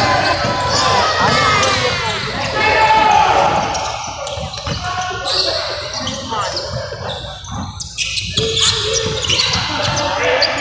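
Basketball bouncing on a hardwood gym floor during a game, with voices calling out, echoing in a large gym.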